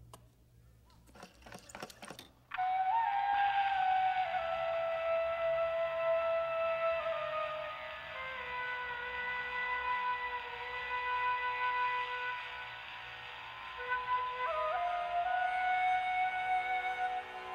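A gramophone record being put on: a few scratchy clicks from the record and needle, then about two and a half seconds in a flute melody over held notes starts suddenly and plays on.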